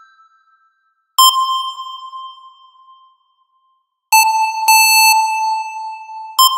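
Single synthesizer notes previewed one at a time as melody notes are placed in FL Studio's piano roll. The tail of an earlier note fades out, a note sounds about a second in and dies away over two seconds, then a slightly lower note sounds three times in quick succession from about four seconds in.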